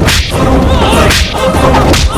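Action-film fight sound effects: a sharp swish-and-hit right at the start and another about a second in, over loud background music.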